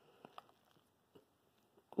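A few faint soft clicks of a silicone spatula stirring and fluffing a pot of freshly cooked, loose-grained white rice, two close together early and one a little past a second in.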